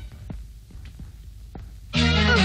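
A few soft, low thuds at uneven intervals over a faint low hum.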